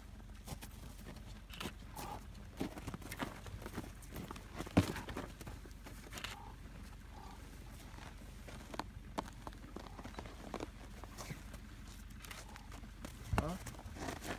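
Footsteps crunching on snow with scattered small knocks, one sharp knock about five seconds in standing out as the loudest.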